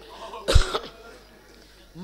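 A single short cough close to the microphone, about half a second in.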